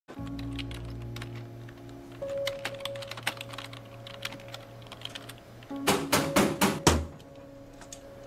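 Typing on a computer keyboard: irregular key clicks over a soft film score of held notes. About six seconds in come four louder, heavier strokes in quick succession.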